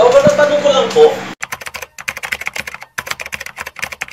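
A brief voice in the first second, then a quick, irregular run of computer-keyboard typing clicks lasting about three seconds: a typing sound effect laid under on-screen text.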